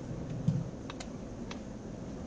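A handful of light, scattered clicks, typical of keys on a computer keyboard being pressed, with a soft low bump about half a second in.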